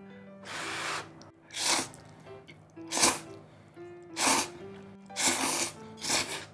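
A person slurping mouthfuls of thick yakisoba noodles, about five sharp slurps roughly a second apart, over faint background music.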